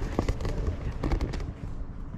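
Wind buffeting the microphone: a low rumble, with a few sharp knocks clustered in the first second and a half.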